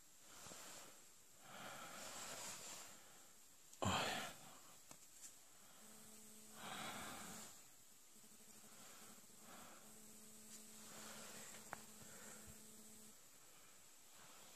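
Faint handling noise: soft rustles of a paper craft dove being turned over in the hands. One short, louder noise comes about four seconds in, and a faint steady hum runs through much of the second half.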